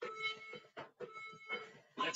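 Faint, short sounds of a person pushing up off an exercise mat into a plank: several brief breaths and scuffs spaced a fraction of a second apart.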